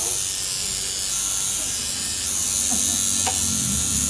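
Electric tattoo machine buzzing steadily as it works ink into skin.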